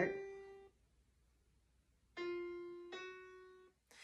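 Piano tones from an ear-training app playing seconds for interval comparison. The last note of a two-note interval fades out, then after about a second and a half of silence a second interval sounds: two notes in turn a small step apart, each dying away. This second pair is the smaller interval, a minor second.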